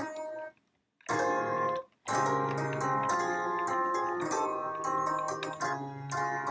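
Omnisphere's "Burning Piano" soundsource, a sampled piano, played dry without added reverb or delay: a few single notes, then fuller chords over a held low note from about two seconds in. The notes stop sharply when the keys are let go instead of ringing on.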